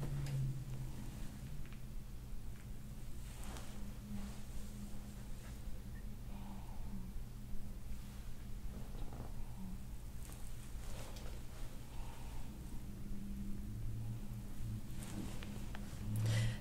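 Faint, irregular rubbing and crackling as a hand-held massage roller is pressed and worked over a person's upper back, over a steady low hum.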